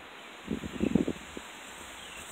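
Handling rustle on a phone held on a selfie stick: a few short scuffs about half a second to a second and a half in, over a steady faint hiss.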